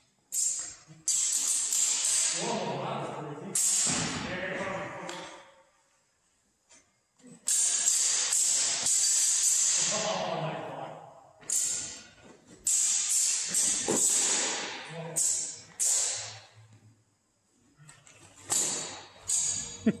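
Steel longswords clashing in a series of sharp strikes, each one ringing on and echoing round a large hall.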